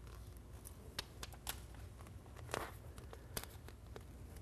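Faint crinkling and a few scattered light ticks of release paper and self-adhered flexible flashing (FlexWrap NF) being peeled and handled with gloved hands.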